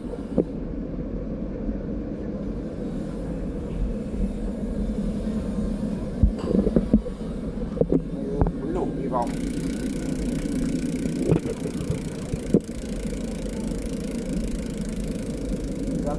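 A steady low rumble and hum, with a few light clicks and knocks scattered through it.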